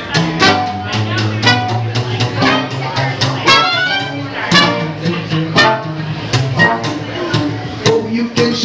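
A live traditional New Orleans-style jazz band playing: trumpet and trombone lead over plucked upright bass and guitar, with a steady beat.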